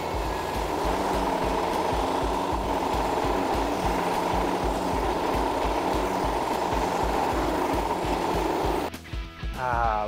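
Small gas-engine vibratory plate compactor running over a compacted gravel base, a steady engine-and-vibration noise that cuts off suddenly about nine seconds in. Background music with a steady beat plays throughout.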